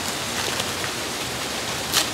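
Steady rain falling, an even hiss, with a brief crinkle of brown packing paper being unwrapped near the end.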